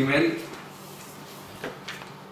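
Pages of a large book being turned and pressed flat on a desk: two short paper rustles close together about a second and a half in.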